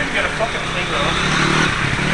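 An engine running steadily at a low, even pitch, with indistinct voices over it near the start.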